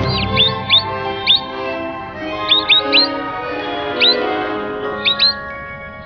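Cartoon birds chirping in short, quick peeps, singly and in little clusters of two or three, over background music with held notes.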